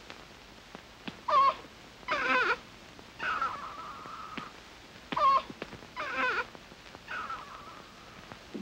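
Baby crying in bouts: two short cries and then a drawn-out wail, with the same pattern repeated a second time.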